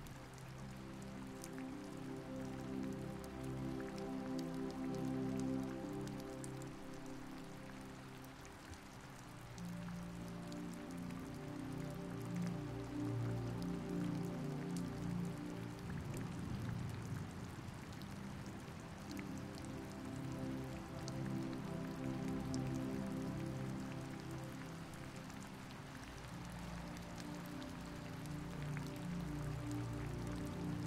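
Steady rain falling, mixed with soft, slow background music of long held chords that change every few seconds.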